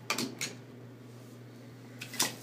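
Two brief knocks, about a third of a second apart near the start, from handling items, then a quiet room with a steady low hum.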